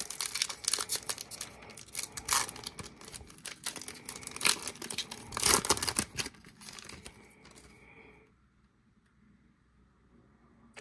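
The wrapper of a sealed football trading-card pack is torn open by hand and crinkled, with a few louder rips about two and five and a half seconds in. The crackling dies away about seven seconds in.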